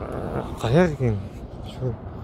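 A dog barking a few times in short yelps.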